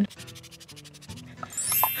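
Short edited sound-effect sting between speech: a fast, even run of ticks over a few held low notes that step down, then a rising high swish near the end.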